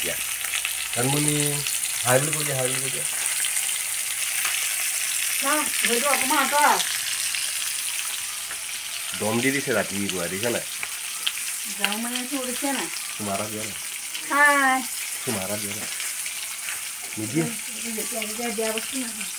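Food frying in hot oil, a steady sizzle throughout, with short stretches of voices talking over it.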